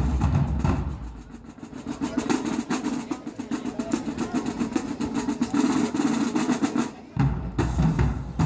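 Marching band drumline playing. The bass drums drop out about a second in, leaving a fast, dense run of strokes on the higher drums, and the bass drums come back in loudly about seven seconds in.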